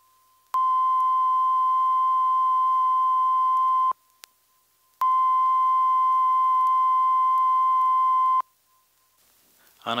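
Two steady electronic test tones from a stereo test recording, each about three and a half seconds long with a short gap between. They are the balance-test notes, played for setting the balance control until they are equally loud from each loudspeaker.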